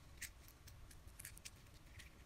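Faint wet clicks and crackles of red slime being squeezed and kneaded in the hand, several close together a little past the middle.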